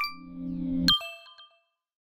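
Synthesised audio-logo sting for an animated logo reveal: a bell-like ding, then a low drone swelling for about a second, ending in a sharp bright ding that rings out and fades.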